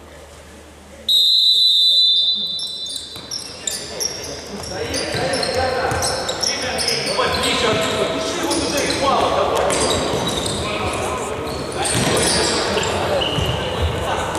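A referee's whistle blows one long blast about a second in, starting play. Then futsal players' shoes squeak repeatedly on the sports-hall floor, with ball kicks and players' shouts echoing in the hall.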